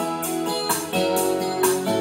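Instrumental music with held chords and a steady beat, in a pause between sung lines of a song.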